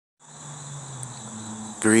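Crickets chirping in a steady, continuous high trill, over a faint low hum. A man's voice starts near the end.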